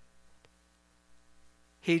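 Faint steady electrical hum in a pause, with one small click about half a second in. A man's voice starts a word near the end.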